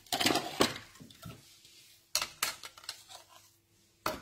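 Hard plastic cutting plates for a die-cutting machine being picked up and set down. There is a quick cluster of clacks at the start, then two sharp knocks about two seconds in.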